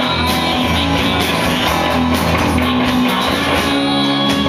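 Live band music: a strummed acoustic guitar with an accordion holding long notes underneath.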